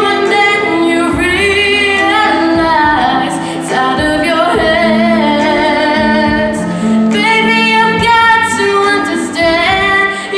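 A young girl singing a slow ballad solo into a handheld microphone, with long held notes that waver and glide between pitches. Underneath runs a soft, sustained instrumental backing.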